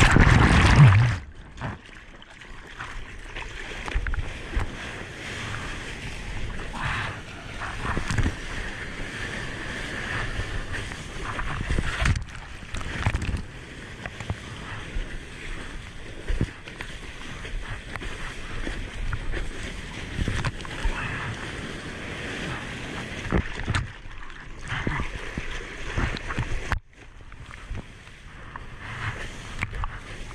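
Seawater sloshing and splashing close around a GoPro held at water level in breaking surf whitewater, with a loud rush of water in the first second as the camera goes under, then an uneven wash of foam and small splashes.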